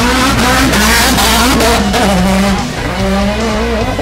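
Slalom race car running hard through the course, its engine revving with tyres squealing; loudest in the first two seconds.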